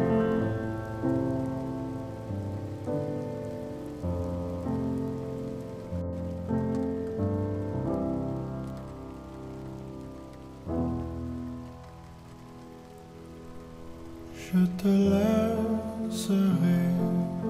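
Slow solo piano chords, each struck and left to ring, dying away to a quiet stretch past the middle, over a steady patter of rain. Near the end the music swells again with a fuller entry.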